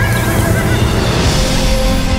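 A horse whinnying near the start, over background film music.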